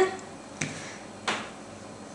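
Two sharp clicks about two-thirds of a second apart, from plastic cosmetic packaging being handled.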